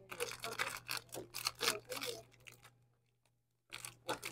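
Cellophane wrapper on a pack of paper napkins crinkling as it is handled, a dense run of sharp crackles for about two and a half seconds that then stops.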